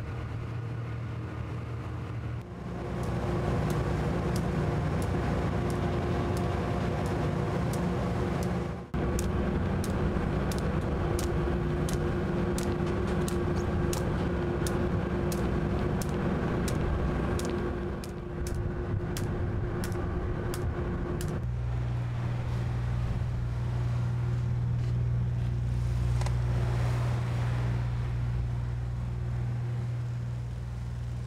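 A ship's engines running with a steady low drone over wind and sea noise on deck. The drone shifts in pitch and level abruptly a few times, and irregular sharp clicks are heard through the middle stretch.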